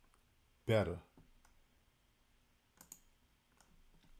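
A man's voice says one short word about a second in. Then a quiet room with a few faint clicks near the end.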